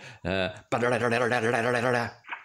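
A man's voice making a drawn-out, wavering sound while the watch is shaken.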